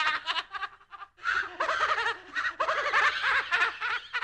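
Spooky horror-style laugh sound effect: a high-pitched voice laughing in rapid, pulsing 'ha-ha' bursts, with a short break about a second in before the laughter picks up again.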